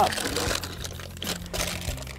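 Baking paper rustling and crinkling, with light knocks, as a set slice is handled and lifted out of its tray.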